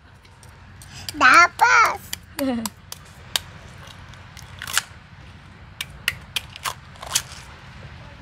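Kitchen knife cutting and cracking open a sea urchin's shell: a string of sharp, irregular crunches and clicks spread over several seconds. A child's voice speaks briefly about a second in.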